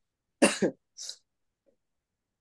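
A person coughs once, followed by a shorter, fainter breathy sound about a second in.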